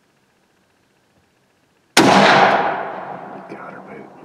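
A single hunting rifle shot about two seconds in, loud and sudden, with a long echo rolling away through the woods over the following seconds.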